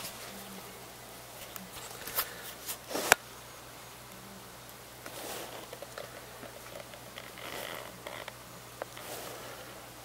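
Handling noise: soft rustling swishes and a few sharp clicks, the loudest click about three seconds in.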